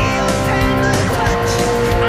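Electric guitar solo, fast-picked sustained notes that shift in pitch a few times, played over a rock backing track.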